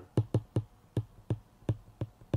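Stylus tip tapping on a tablet's glass screen while handwriting a word: about seven short, sharp taps at uneven spacing.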